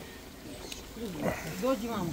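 Men's voices: after a quiet first second, a drawn-out exclamation, "O!", that swoops in pitch, then talking.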